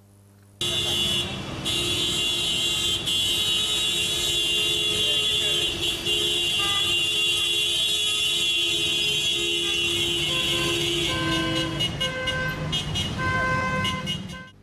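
Vehicle horns blaring from a line of farmers' pickup trucks in a protest drive, over street traffic noise. One horn is held long until near the end, and from about halfway through other horns join in short, repeated toots.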